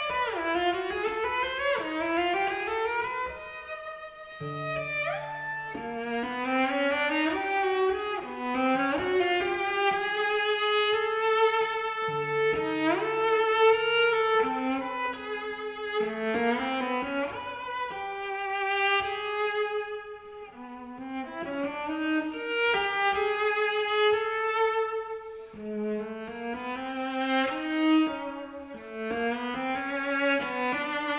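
Solo cello playing bowed notes that slide upward in pitch again and again, often against a second sustained note as double stops.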